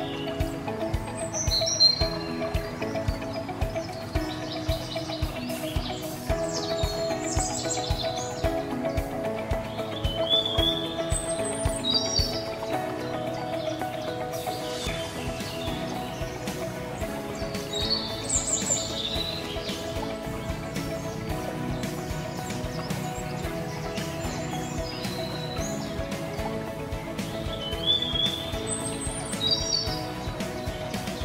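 Background instrumental music of sustained, held notes over a soft steady beat, with short bird chirps laid over it every few seconds.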